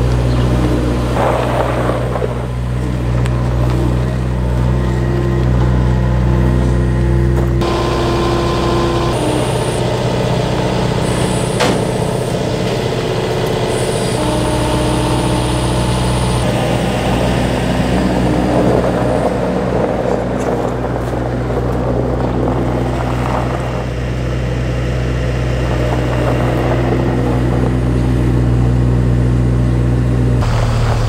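Skid-steer loader's engine running steadily while it moves pallets of blocks, its low hum stepping up and down in pitch several times as the load and throttle change.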